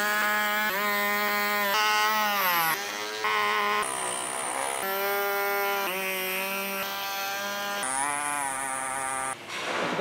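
Small corded power tool cutting through a plastic bumper cover, its motor whining steadily with the pitch bending down and up as it bears into the plastic. The sound jumps abruptly to a new pitch several times.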